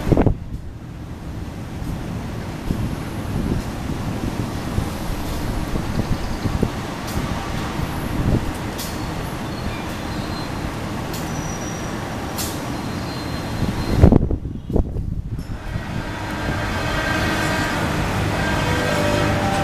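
Diesel locomotive hauling passenger coaches through a station: a steady low engine rumble with occasional faint clicks. There is a loud, brief low thump at the start and another about fourteen seconds in.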